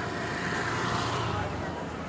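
Street traffic: a motor vehicle passing, its noise swelling to about a second in and then easing off.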